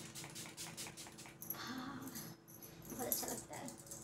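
A fine-mist pump spray bottle spritzed at the face several times, in short hissing puffs, then one longer soft hiss.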